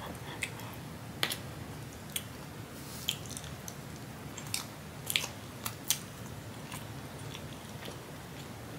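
Close-miked mouth sounds of chewing a bite of syrup-soaked lemon ricotta pancake, broken by about eight sharp, short clicks spread through the stretch.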